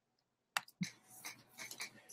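Quiet room tone with one faint sharp click about half a second in, followed by a few soft, short sounds.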